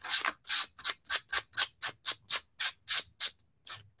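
Hand-sanding painted wood with a piece of coarse sandpaper, quick back-and-forth strokes about five a second, with a short pause before a last stroke near the end. The sandpaper is scratching through green paint and crackle medium to distress the finish.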